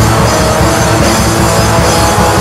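Instrumental atmospheric black metal: a dense wall of distorted electric guitars over fast, driving drums, loud and unbroken.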